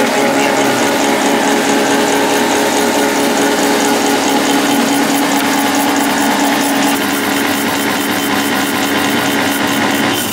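Motor-driven noodle-cutting machine running as dough sheet passes through its rollers and cutter: a steady hum with several held tones, slightly quieter about seven seconds in.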